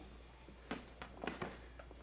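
Faint rustling and a few short creaks and clicks of natural-fibre rope being handled and pulled taut around wrists, about five small sounds in the second half.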